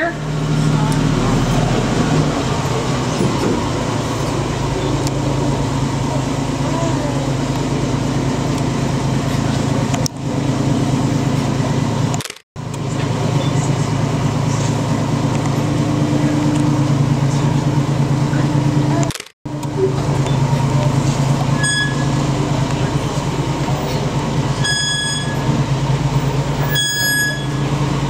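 Tour tram's engine running with a steady low drone as it carries riders through the cave. The sound cuts out abruptly three times, and a few short high tones come near the end.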